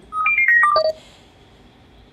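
A quick run of about eight short electronic beeps lasting under a second. They jump up in pitch, then step down, note by note.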